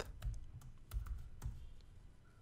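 Computer keyboard typing: a handful of short, irregular key clicks as a line of code is finished.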